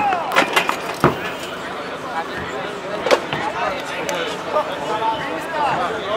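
Voices calling out around a small-sided football game, with a few sharp knocks of the football being played, the loudest about three seconds in.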